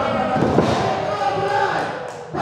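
A wrestler's body hitting the canvas of a wrestling ring with a single heavy thud about half a second in.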